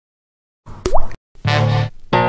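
Silence, then about a second in a short sound-effect pop: a sharp click with a quick upward sweep in pitch. After a brief gap a single sustained musical note with deep bass sounds, the start of the music.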